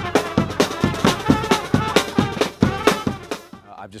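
Military brass band playing a lively Romanian hora in the street, trumpet melody over snare and bass drum beating about four times a second. The music breaks off just before the end.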